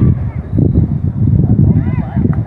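Wind rumbling and buffeting on the microphone, with a few high shouted calls from people on and around the field.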